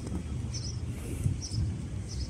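Birds chirping in short high calls, several times about half a second apart, over a low steady rumble.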